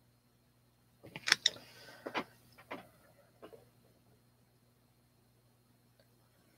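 A short series of about five sharp knocks and clicks, starting about a second in and spread over two and a half seconds, the first ones loudest.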